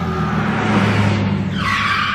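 A car engine running steadily, with a tyre screech starting about one and a half seconds in as the car pulls to a stop.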